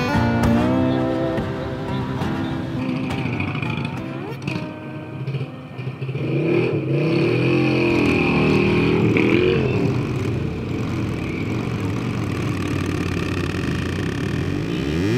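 Several motorcycle engines running and revving as a group of riders moves off, mixed with background music.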